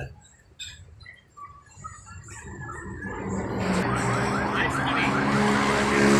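A motor vehicle approaching in the street, growing steadily louder from about halfway through. It carries a rapid, repeating rising electronic whoop, like a siren or alarm.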